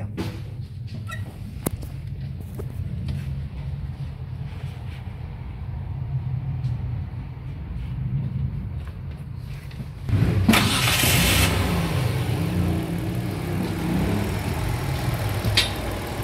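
A low steady rumble, then about ten seconds in a sudden louder burst as the Hyundai Grandeur XG's gasoline V6 engine starts, settling into a steady louder run. The start is a test of a fuel pressure regulator whose leaking diaphragm lets gasoline seep through the vacuum hose into the intake manifold.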